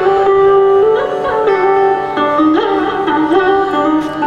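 Carnatic classical melody on electric mandolin, with a violin following along, playing held notes that slide and waver in pitch in ornamented phrases.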